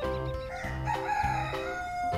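A rooster crowing: one long, wavering crow starting about half a second in, laid over background music with a steady bass.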